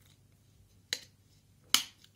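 Drinking from a plastic bottle's spout: two short, sharp mouth clicks, the second louder, coming as the lips come off the spout near the end.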